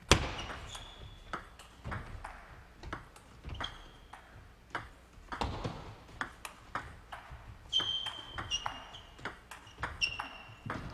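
Table tennis rally: the celluloid-sized plastic ball clicking back and forth off the paddles and the table through a long point. Short high squeaks of shoes on the court floor come in between, near the start, about four seconds in, and around eight seconds.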